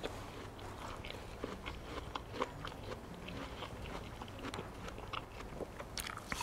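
A man biting and chewing a crisp apple: a run of small, irregular crunches.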